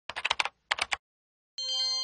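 Keyboard-typing sound effect: two quick runs of key clicks, about six and then three. About a second and a half in, a bright bell-like chime starts, several tones ringing together and slowly fading.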